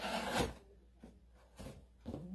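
A cardboard shipping box being shifted on a table: a brief scraping rustle in the first half second, then quiet apart from a faint knock near the end.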